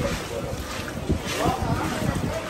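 Steady wind and rain noise on the microphone, with indistinct voices of people.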